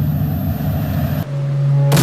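Cinematic intro sound effects: a loud, low rumble, then a steady low hum from about a second in, and a sharp hit just before the end.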